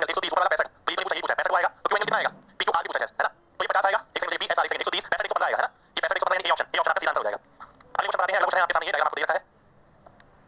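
Speech only: a man lecturing in short phrases with brief pauses.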